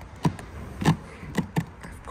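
Plastic cassette toilet tank knocking and scraping against its hatch opening as it is pushed back into its housing: a few light knocks, the loudest about a second in.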